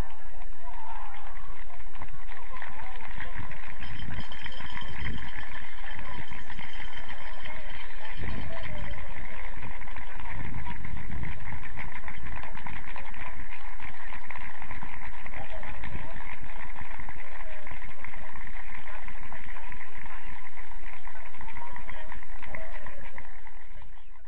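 Indistinct distant voices of players and spectators over steady outdoor pitch-side noise, with low rumbles a few seconds in; the sound fades out near the end.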